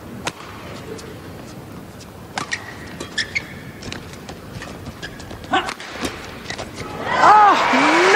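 Badminton rally: scattered sharp racket strikes on the shuttlecock and short squeaks of court shoes on the mat. Near the end, voices rise over it.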